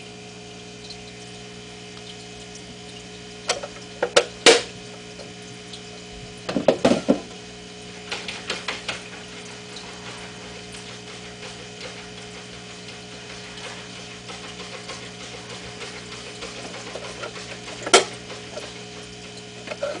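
A steady low hum with scattered clicks and knocks: a couple about four seconds in, a short cluster around seven seconds, a few lighter ones just after, and one sharp knock near the end.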